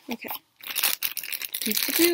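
Crinkly packaging rustling and tearing as a boxed Pop vinyl figure is pulled out of its wrapping by hand, a dense run of crackles starting about half a second in.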